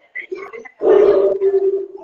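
A man's voice making short speech-like sounds without clear words, then a loud held vowel-like sound for about a second.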